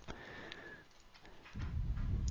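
Faint breathing at a close microphone, sniff-like at first and again low near the end, with one faint click about half a second in.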